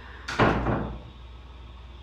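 A wooden room door slammed shut: one loud bang about a third of a second in, trailing off over about half a second.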